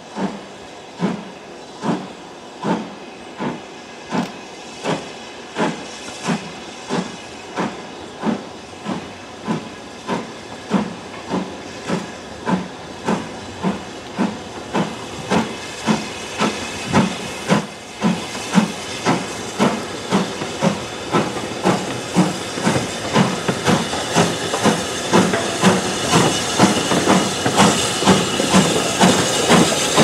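BR Standard Class 5 steam locomotive 73082 Camelot working a train, its exhaust beats quickening from a little over one a second to about two a second as it gathers speed and grows louder on approach. Steam hiss rises toward the end as it passes.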